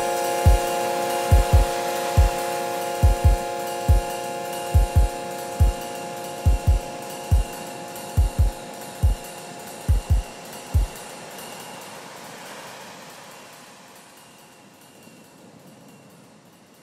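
Electronic music fading out: a held chord with deep bass-drum hits in an uneven pattern. The hits stop about eleven seconds in, and the chord and a hiss die away.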